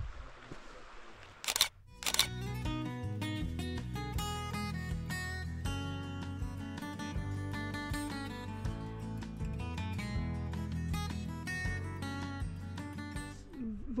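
Two camera shutter clicks about a second and a half in, followed by background music with sustained instrumental notes.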